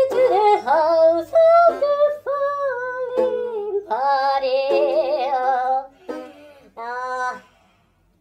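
A man singing in a high voice, holding long notes that waver in pitch. The voice is deliberately poor. It breaks off about six seconds in, and one short last note follows a second later.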